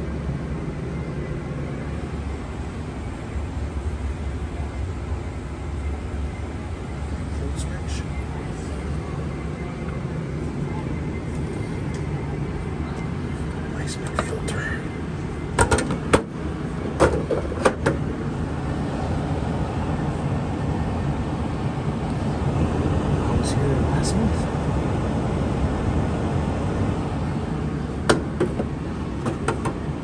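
Bryant furnace blower running with a steady hum. A few sharp clicks and knocks from the sheet-metal filter door and panel being handled, a cluster about halfway through and more near the end.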